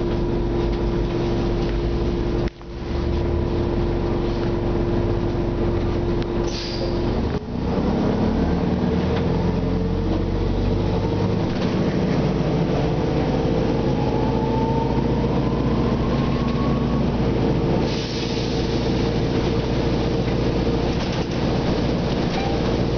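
Diesel drivetrain of a Nova Bus RTS city bus heard from inside the passenger cabin: a steady deep running sound, then, after about seven seconds, a whine that rises slowly in pitch as the bus gathers speed. There are short hisses of air about six seconds in and again near the end.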